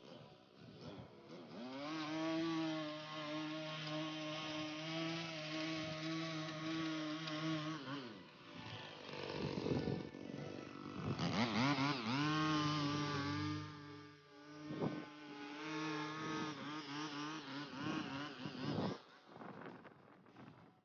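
Motorized lawn edger running while its blade cuts the grass edge along a concrete driveway. It spins up about two seconds in, holds a steady pitch, winds down, then revs up again partway through with a couple of dips before cutting off near the end.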